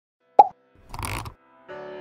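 Intro-animation sound effects: a short pop that drops quickly in pitch about half a second in, then a brief noisy swish around one second. Near the end a sustained synth chord of music begins.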